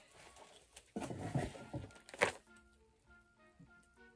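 Plastic wrapping rustles briefly as it is handled, ending in a sharp crinkle, then soft background music with slow held notes.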